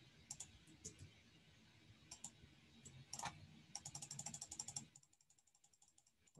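Faint clicking of a computer mouse as points of a Photoshop polygonal lasso selection are placed: a few single clicks, then a quick run of about ten clicks a second for about a second, trailing off fainter.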